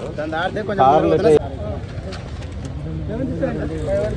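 Men's voices in an outdoor crowd, one calling out loudly about a second in, then quieter talk.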